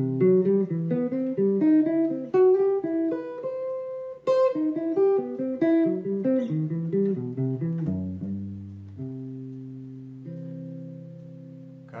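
Clean-toned archtop electric guitar playing a quick single-note line up and back down a major triad with leading-tone notes pulling into the chord tones. About eight seconds in it slows to a few longer notes, and a chord is left ringing and fading near the end.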